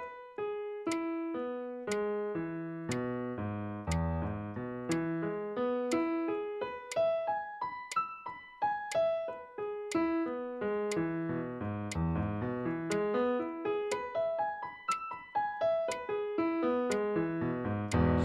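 Digital piano playing a finger exercise: an even, unbroken stream of single notes in arpeggio patterns that climb and fall over several octaves in repeating waves, reaching deep bass notes twice.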